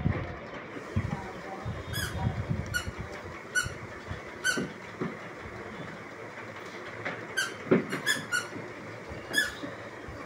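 Handling noise from unboxing a phone: light knocks and rustling of the cardboard box and a clear plastic case. Through it come about eight short, high squeaky chirps at irregular intervals.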